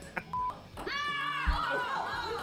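A short, steady electronic beep, then several young women's high voices exclaiming together in excitement, with a dull thump about halfway through.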